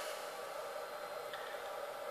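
Quiet steady background hiss with a faint hum: room tone in a pause between words.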